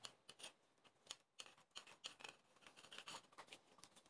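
Plastic wrap crinkling and rustling with short, irregular scraping sounds as dough is trimmed on the counter, all faint.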